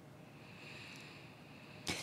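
Quiet room tone of a meeting room picked up by the microphones, a faint steady hiss. Near the end there is a short sharp sound just before speech resumes.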